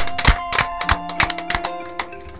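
A few people clapping, the claps irregular and thinning out until they fade near the end, over background music with held notes.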